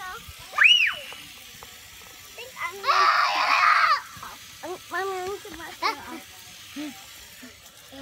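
Children squealing and shrieking as they run through a lawn sprinkler's cold spray: a short, high squeal that rises and falls about half a second in, then a longer, louder shriek for about a second around three seconds in, followed by children's chatter.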